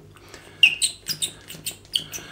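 Plastic pump dispenser of aftershave balm being handled and worked: a quick series of small sharp clicks with short high squeaks, the loudest about half a second in.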